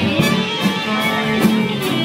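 Live band playing upbeat dance music, with electric guitar to the fore.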